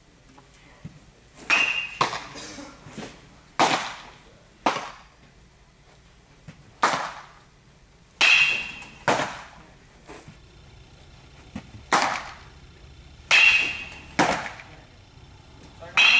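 A string of sharp, loud pops of baseballs smacking into leather gloves, about a dozen, several coming in pairs half a second to a second apart. Each pop rings briefly in the large hall.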